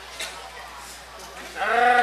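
A man's voice giving one short drawn-out call near the end, after a faint click about a quarter second in.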